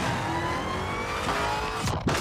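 Supercharged 6.2-litre Hemi V8 of a Dodge Challenger SRT Demon accelerating hard, its pitch climbing steadily, broken off by a sharp hit near the end.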